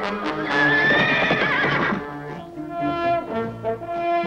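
A cartoon horse whinnying, a wavering cry over orchestral background music, for about the first two seconds; then the music carries on alone with brass.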